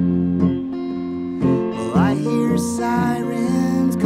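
Solo hollow-body archtop electric guitar played live, with low bass notes ringing under picked chords and a note sliding upward about two seconds in.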